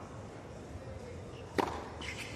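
A tennis serve: a single sharp crack of the racket strings striking the ball about one and a half seconds in, over low, steady crowd ambience.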